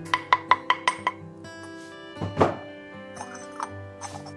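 Glazed ceramic clinking: a quick, even run of about six light clinks in the first second, then a louder scraping rub a little past the middle as the lid of a glazed ceramic dish is worked free in a cloth. The dish was glaze-fired with its lid in place, so the lid may have fused to its base.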